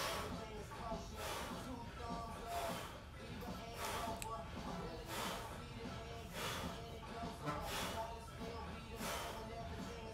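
A man's breathing, one short sharp exhale roughly every 1.3 s, each in time with a single-leg glute bridge rep, over quiet background music.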